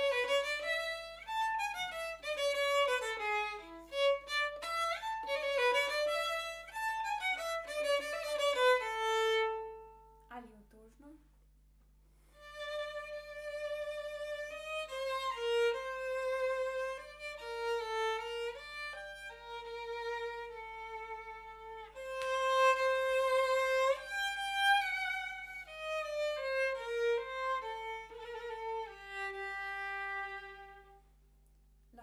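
Solo violin played with the bow, to show a cheerful sound: a quick, lively run of fast-changing notes. After a short pause about ten seconds in, a slower passage of longer, held notes follows.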